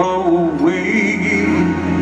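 Live performance of a slow R&B ballad: a man singing into a microphone, holding long notes with slow bends, over a band's sustained keyboard chords.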